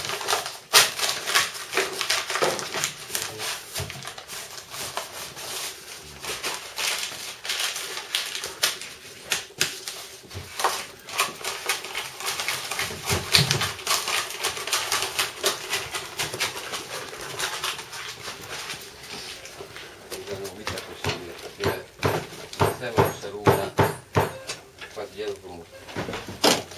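Stiff brown kraft paper being rolled and pressed by hand into a tube on a tabletop: irregular rustling and crackling with frequent small taps and knocks.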